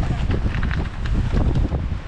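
Wind buffeting the microphone in a steady, gusting low rumble.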